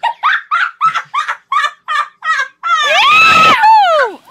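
Women shrieking with laughter in quick high-pitched bursts, about three a second, then one long loud scream that falls in pitch at the end.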